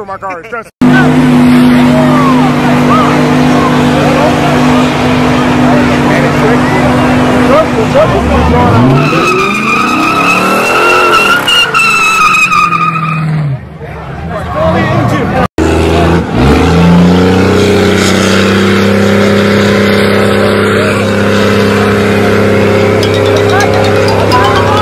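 Cars doing burnouts, among them a Chrysler 300 sedan: engines held at high revs with tires squealing on the pavement. Around ten seconds in a high tire squeal rises over the engine. Near the end there is a second take in which an engine revs up and holds.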